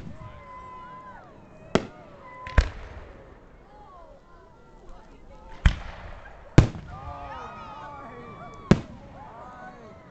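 Aerial fireworks shells bursting: five sharp bangs, in two close pairs and then a single one near the end.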